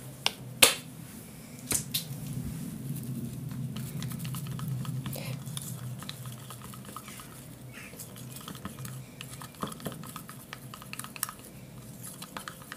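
A thin stir stick clicking and scraping inside a small plastic cup as thick acrylic and enamel paint is mixed, with a few sharp knocks in the first two seconds and lighter ticking after that.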